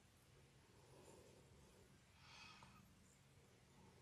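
Near silence: room tone, with a faint soft rustle a little over two seconds in.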